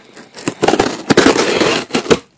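A cardboard shipping box being handled and opened right against the microphone: loud crackling and scraping with sharp clicks, starting about half a second in.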